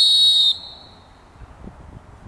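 A single sharp whistle blast of about half a second, blown by the competition judge in a French Ring trial to end the dog's guard on the decoy.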